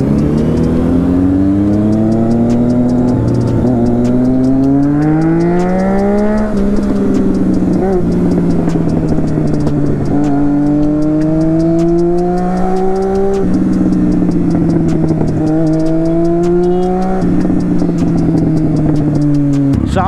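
Triumph Street Triple 675 motorcycle engine under way, heard from the rider's seat: its pitch climbs, drops at gear changes about three and six seconds in, eases, then climbs twice more before falling off near the end as the bike slows. Wind noise runs underneath.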